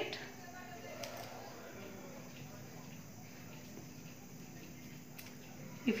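Faint snips and paper rustle of scissors cutting through folded coloured paper, with a couple of light clicks, over a faint steady hum.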